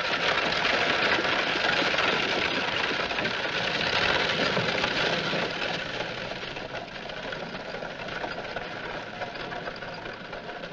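Two-horse carriage pulling away: hooves and iron-rimmed wheels clattering, loud at first and fading steadily after about five seconds as it moves off.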